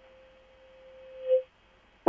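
A single steady hum-like tone, one pitch held throughout, growing louder for about a second and a half and then cutting off suddenly.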